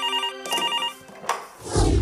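Electronic desk telephone ringing: one double ring, two short trilling bursts in quick succession. A thud follows in the second half as the handset is handled.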